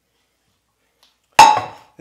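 A stainless steel cooking pot is set down on a stone countertop about one and a half seconds in. It gives a single sharp clank with a short metallic ring.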